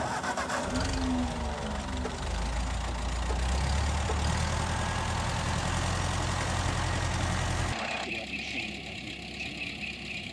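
Vintage Ford tractor's four-cylinder engine starting abruptly, its pitch dropping and settling in the first couple of seconds, then running steadily with a heavy low rumble. A little before the end the sound changes suddenly to a quieter idle.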